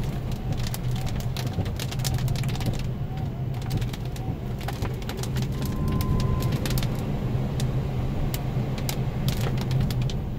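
Steady tyre and road noise with a low hum inside a Tesla Model S cabin on a wet road, with scattered sharp ticks of rain hitting the car.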